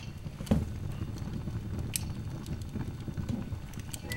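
A gift box being handled and opened by hand: scattered small clicks and knocks, with a soft thump about half a second in and a sharp click near two seconds.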